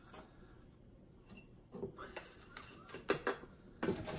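A few light clicks and knocks of a small plastic scoop and crushed ice against a bowl and glass as the ice is scooped into the glass, starting about two seconds in.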